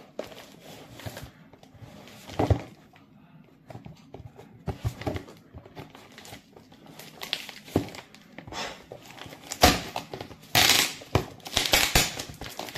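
Clear packing tape on a cardboard box being picked and pulled at by fingers: irregular crinkling, scratching and crackling, with a few louder bursts near the end.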